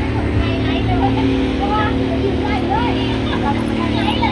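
A steady low engine hum runs throughout, with people's voices talking over it.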